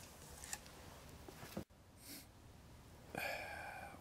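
Mostly faint background with a single click about halfway through; in the last second, hydraulic oil starts pouring from a jug into a funnel, a faint steady flow.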